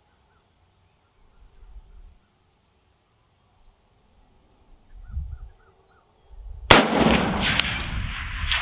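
A single shot from a USMC MC1 Garand sniper rifle, a .30-06, fired about three-quarters of the way in. The report is sudden and loud and rings on in a long echo, with a few short sharp clicks after it. Before the shot there are only faint low rustles.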